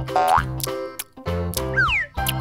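Bouncy children's cartoon background music, with a short rising boing-like sound effect about a quarter second in and falling whistle-like glides near the end.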